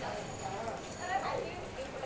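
Indistinct voices of people talking in the background over a steady low noise.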